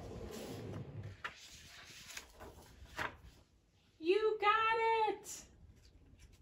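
A hand rubbing hard across a page of a board book, a soft brushing noise in the first second. About four seconds in comes a woman's wordless drawn-out vocal sound, rising at the start and then held for about a second; it is the loudest thing here.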